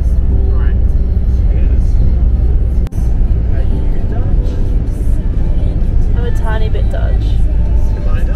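Steady low rumble of road and engine noise inside a moving car's cabin, breaking off for an instant about three seconds in, with a voice and music over it.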